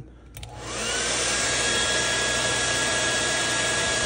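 Hand-held hair dryer switched on about a third of a second in. Its motor whine rises in pitch as it spins up, then it runs steady on its blowing noise.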